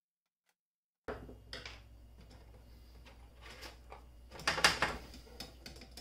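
Screwdriver and metal parts of an inverter being taken apart: irregular clicks, scrapes and knocks of metal against metal and the bench, starting suddenly about a second in, with the loudest clatter about three-quarters of the way through.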